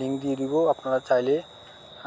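A man's voice talking, the words breaking off about one and a half seconds in, over a thin, steady high-pitched whine.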